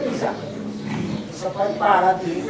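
A man talking, the speech of a lecture.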